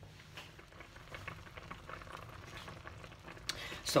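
Quince pieces simmering in sugar syrup in a stainless steel pot: faint, steady bubbling and crackling, with one short click near the end.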